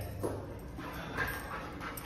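A dog panting quietly, a few short faint breaths.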